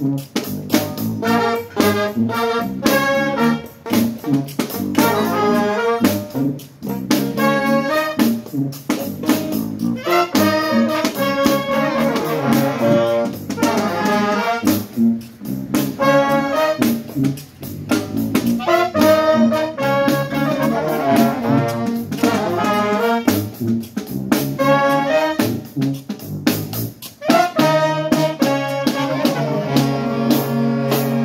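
A small brass band playing a jazz tune: a sousaphone bass line under saxophones, trombone and trumpet, with sharp drum hits keeping time.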